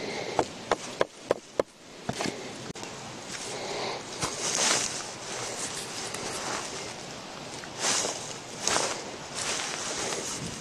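Five sharp wooden knocks, about a third of a second apart, as a knife is worked into a piece of wood on a log. Then footsteps and rustling on dry leaf litter and dirt, with a few louder scuffs as a long wooden pole is handled.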